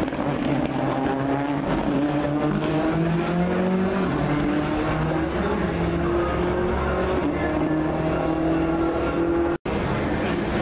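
A rally car's engine running hard on the circuit, its pitch climbing and dropping as it is worked through the gears. The sound cuts out for an instant near the end.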